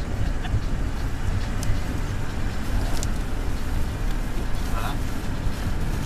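Car in motion heard from inside the cabin: a steady low rumble of road and engine noise.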